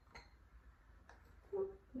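A few faint clicks of a glass jar knocking against the top of a painted candlestand as it is set on, one with a brief glassy ring; the jar's base will not sit steady on the stand.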